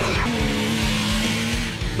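Background music over a Yamaha YXZ1000R sport side-by-side driving on loose dirt, with a steady engine note and a hiss of tyre and gravel noise.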